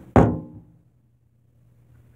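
A single sharp knock of something hard against kitchenware just after the start, ringing briefly with a clear tone as it dies away within about half a second.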